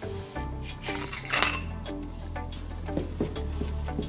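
Quiet background music with a sharp metallic clink about a second and a half in, and a few lighter knocks: the metal valve disc and stem being handled and set down.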